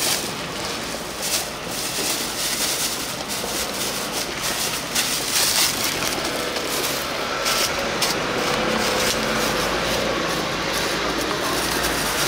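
Thin plastic bags crinkling and rustling in short bursts as portions of sundae and offal are bagged by hand, over a steady noise bed.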